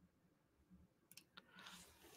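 Near silence: room tone, with a few faint clicks a little over a second in.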